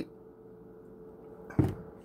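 Faint steady hum, then a single short thump about one and a half seconds in as a syrup bottle is set down on the countertop.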